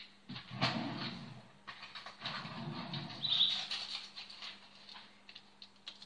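Aluminium foil wrapper of a block of fresh yeast crinkling as it is handled and opened, in two bursts of crackling of about a second and a half each.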